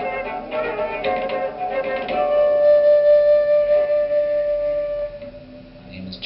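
Western concert flute playing with a strummed guitar in a small band; the flute holds one long note through the middle, and the music dies away near the end.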